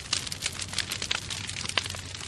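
Dense, steady crackling noise with a low steady hum under it, in a radio mix between a spoken drop and the next track.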